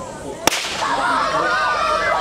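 A single sharp crack of a starting pistol about half a second in, then a crowd of children's voices shouting and calling out.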